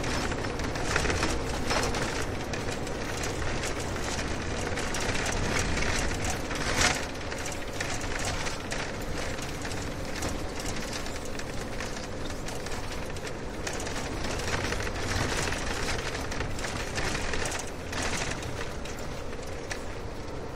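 Steady road rumble of a car driving, with scattered small knocks and one sharper knock about seven seconds in.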